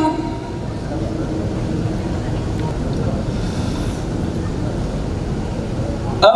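A pause between phrases of a Quran recitation: no recited voice, only a steady low rumbling background noise from the hall.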